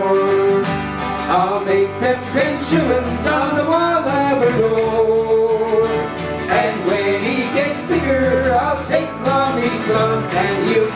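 Live folk band playing a Newfoundland song: strummed acoustic guitars, one of them a twelve-string, over an electric bass line.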